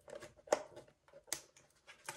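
Faint clicks and scrapes of a blade cutting into a cardboard trading-card blaster box, with two sharper snaps, one about half a second in and another just past a second.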